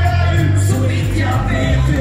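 Live rock band playing: electric bass and drum kit with cymbals keeping a steady beat under a male lead vocal, heard from among the audience.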